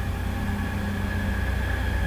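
Steady background hum and hiss with a faint high-pitched whine, unchanging throughout.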